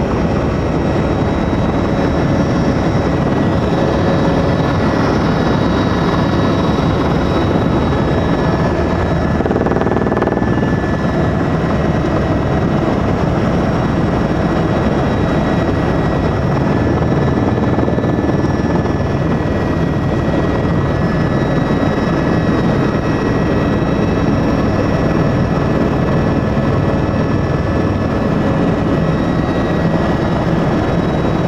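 Helicopter cabin noise in flight: a loud, steady drone of engine and rotor, with a few thin high whines running through it.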